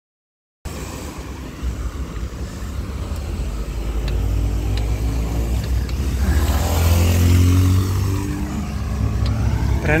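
Wind rumbling on the microphone of a handlebar-mounted camera as a bicycle rides along a street, growing louder, with a motor vehicle's engine passing about six to eight seconds in. The sound cuts in suddenly from silence just after the start.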